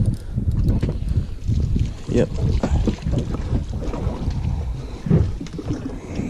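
Wind buffeting an action camera's microphone on a small boat: an uneven low rumble with scattered brief knocks.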